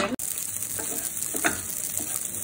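Vegetarian mince and chorizo sizzling as they fry in the chorizo's oil in a nonstick frying pan, stirred with a wooden spoon: a steady hiss.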